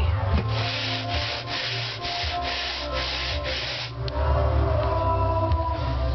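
Hand scraper scraping popcorn texture off a ceiling: about seven quick, even strokes, about two a second, stopping about four seconds in.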